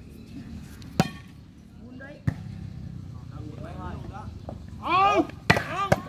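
A volleyball being struck during a foot-volleyball rally: a sharp smack about a second in, another a little over a second later, and two more close together near the end. Spectators shout over a steady crowd murmur near the end.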